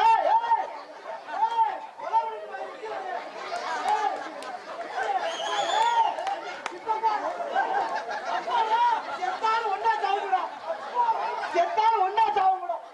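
Loud, overlapping shouting voices of stage performers in a comic scuffle, carried through stage microphones, with a higher-pitched cry about halfway through.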